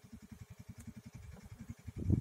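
Faint low engine-like throb with a fast, even pulse, about fifteen beats a second.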